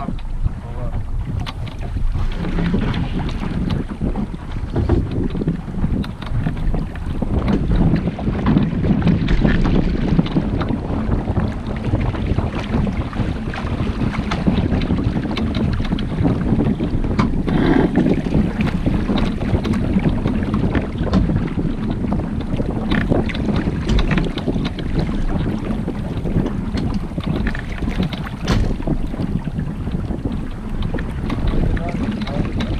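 Wind buffeting the microphone over a steady low rumble, swelling and easing irregularly with scattered crackles.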